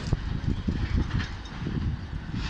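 Low rumble of a CSX coal train moving away down the line, with uneven buffets of wind on the microphone.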